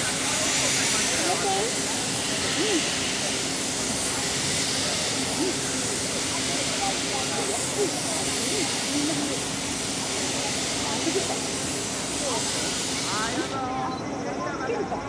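C56 160 steam locomotive moving off slowly with steam hissing steadily from its open cylinder drain cocks. The hiss cuts off suddenly shortly before the end.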